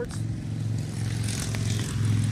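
A motor vehicle engine idling, a steady low hum with an even, unchanging pitch.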